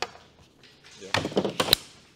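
A soft knock, then near the end a short run of light knocks ending in one sharp click, like small objects handled against a table or each other.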